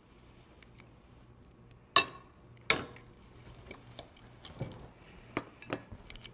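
Metal kitchen tongs and a plate clinking against a stainless steel saucepan as chicken tenderloins are moved into the pan. There are two sharp clinks about two seconds in and just under a second apart, then a few lighter clicks near the end.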